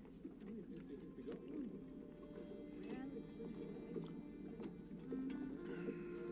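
Faint birds cooing in a TV drama's soundtrack, with soft sustained music coming in about five seconds in.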